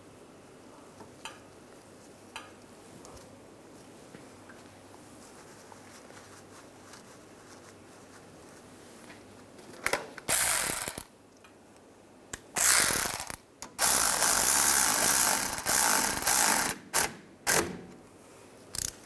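Cordless electric ratchet running in a few short bursts, the longest about three seconds, driving a brake-hose banjo bolt into a new rear brake caliper. Before the bursts, which start about ten seconds in, there are only a few faint handling clicks.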